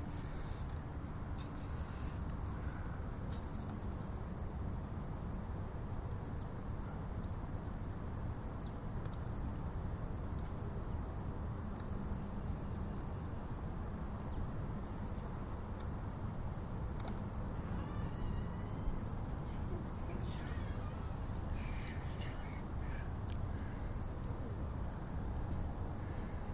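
Crickets chirping in a steady, high-pitched chorus, over a low background rumble.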